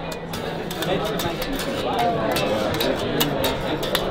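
A 1979 Fender Precision electric bass being played, heard through the steady chatter of a crowded hall.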